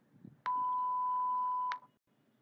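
A single steady electronic beep, one pure tone lasting about a second and a quarter, with a small click as it starts and stops. It marks the end of a recorded dialogue segment.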